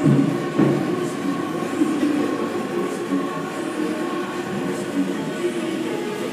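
Steady droning background noise of a large gym hall, with two knocks in the first second.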